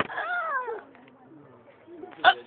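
A person's short high-pitched whine-like vocal sound that rises and then falls in pitch, lasting under a second at the start.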